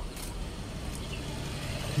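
Infiniti Q50 engine idling steadily, with its radiator cooling fans not running: the newly fitted radiator fan control module is no longer keeping them on.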